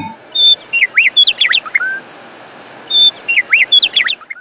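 Songbird singing: two matching phrases of quick swooping chirps and short high whistles, with a brief pause between them.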